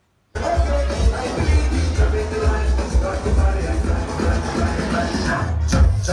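Loud electronic dance music with a heavy, pulsing bass beat, as played over a nightclub sound system. It cuts in suddenly just after the start.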